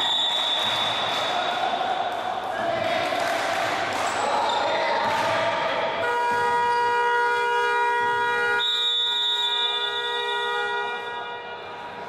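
A basketball bouncing on a gym floor, with a steady shrill tone at the start. From about halfway in, a long steady horn-like buzzer sounds for about five seconds.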